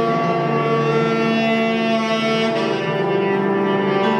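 Tenor saxophone playing long, sustained, overlapping tones in free-jazz improvisation, with a grand piano.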